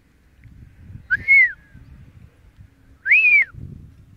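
A person whistling a recall call to a horse: two short single-note whistles about two seconds apart, each rising and then falling in pitch.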